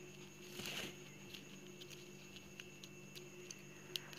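Faint clicks and a brief rustle of plastic wire strands being handled and pulled through a woven basket, over a low steady hum. A short rustle comes just under a second in and a sharper click near the end.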